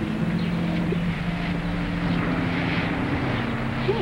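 A steady low droning hum made of several held tones, which shift in pitch in small steps a few times.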